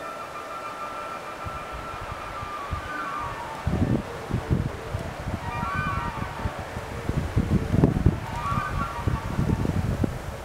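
Red deer stag roaring during the rut: rough, low bellows that start about four seconds in and come again several times, loudest near the eighth second.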